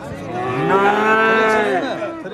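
A calf mooing once: one long call of about a second and a half that rises and then falls in pitch.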